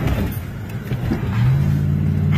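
Car engine accelerating hard, heard from inside the cabin. Its pitch rises about a second and a half in and then holds.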